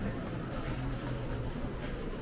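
Steady low rumble of outdoor ambience picked up by a walking camera, with no clear event standing out.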